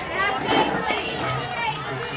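Several high-pitched young voices calling and cheering over one another, with a lower voice joining in the second half.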